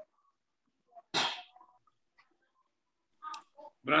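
A single short, sharp burst of breath from a person, sneeze-like, about a second in.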